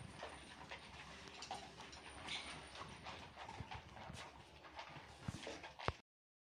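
Dog eating dry kibble: faint, irregular crunching and small clicks throughout, with a sharper click near the end.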